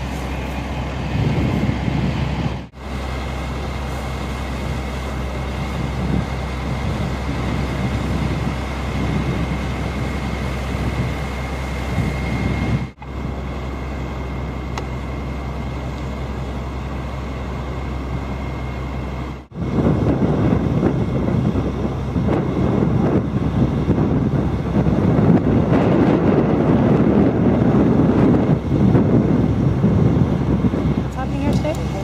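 Steady low engine rumble with a faint whine, typical of a fire engine running its pump, broken off briefly three times. From about two-thirds in, a louder, rough rushing noise of wind on the microphone takes over.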